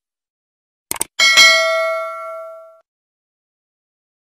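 Subscribe-button animation sound effect: a quick double mouse click about a second in, then a bright bell ding that rings out and fades over about a second and a half.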